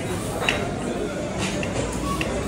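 Plastic screw cap twisted off a milk carton: a sharp click about half a second in, then two fainter ticks, over background voices.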